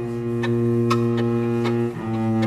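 Cello holding one long, steady low bowed note, with a few faint clicks over it.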